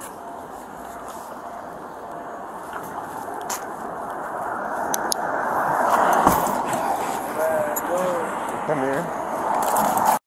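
Body-worn camera audio: a rustling, rubbing noise on the microphone that grows steadily louder, a sharp knock about six seconds in, and short muffled voice sounds near the end.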